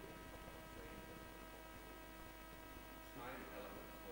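Faint, steady electrical mains hum with a whine of several steady tones, carried through the hall's microphone and sound system. A brief faint rustle or murmur comes a little after three seconds in.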